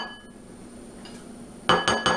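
Rapid run of ringing glass clinks, about seven a second, as cooked chickpea-flour paste is scraped from a glass measuring cup into a glass mixing bowl with a spatula. The clinks begin near the end, after a quiet stretch.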